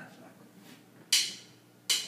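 A drummer's count-in: two sharp, bright clicks about three-quarters of a second apart, keeping an even tempo for the band to come in on.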